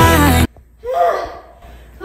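A pop song with singing cuts off abruptly about half a second in. A moment later a woman gives one gasping, breathy exhale, out of breath after a dance workout.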